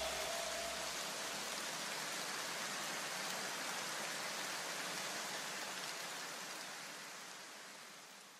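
A steady wash of hiss left after electronic background music cuts off, fading out slowly until it is gone at the end.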